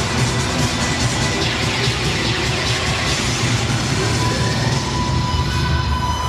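Cheerdance routine music played loud over an arena sound system, heavy in the bass. A held high note comes in about two-thirds of the way through.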